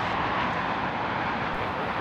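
Airbus A350-900's Rolls-Royce Trent XWB jet engines running at idle as the airliner rolls out slowly after landing: a steady rushing noise.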